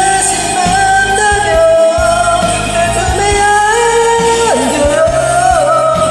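A voice singing a pop-rock ballad cover over a karaoke backing track, holding long notes with vibrato; one long high note breaks off about four and a half seconds in.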